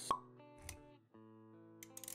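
Intro sound effects over music: a sharp pop just after the start and a low thud a little over half a second in, then held musical notes return with a few light clicks near the end.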